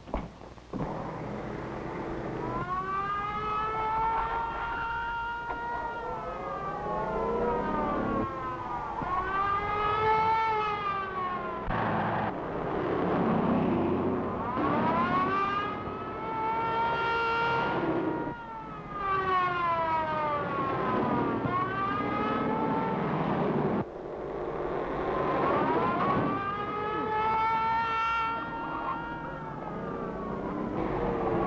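Police car siren wailing, its pitch rising and falling over and over, with the noise of a moving car beneath it.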